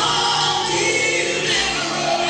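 Gospel song with a choir singing over instrumental backing.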